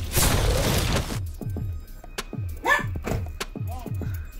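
An explosion sound effect, a loud noisy blast lasting about a second, over background music with a steady, deep, repeating bass beat. A couple of short swooping sounds come near the end.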